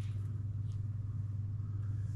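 A steady low hum, with one faint click about two-thirds of a second in.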